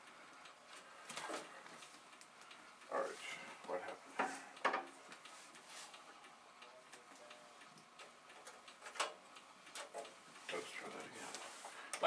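Scattered light clicks and knocks of computer hardware being handled on a table, a few every couple of seconds.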